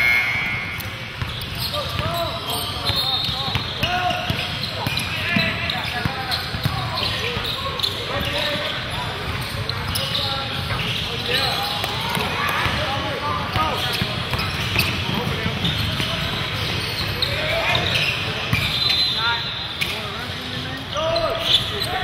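Basketball game in a large gym: the ball bouncing on the hardwood floor, many short sneaker squeaks, and indistinct calls from players and spectators, all echoing in the hall.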